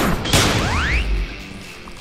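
Anime fight sound effects over background music: a whoosh and a crashing impact about a third of a second in, followed by a thin rising tone, then dying down toward the end.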